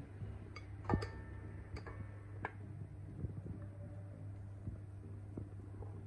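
A few light clinks and taps, about four in the first two and a half seconds, as a glass bowl is tipped against a stainless-steel stand-mixer bowl to pour in flour. A steady low hum runs underneath.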